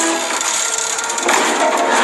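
Film sound effects of a heap of junk and trash shifting and crunching: a dense crackle of many small rattles and clicks, with a fresh burst of crunching noise a little past halfway.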